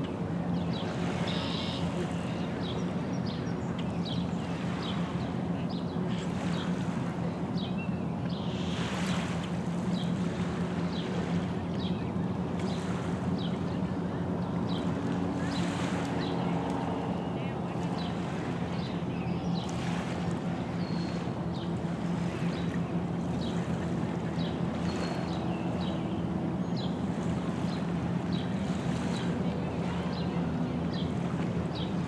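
Lakeshore ambience: small waves lapping on a stony shore over a steady low hum from a distant motor, with many short high ticks scattered throughout.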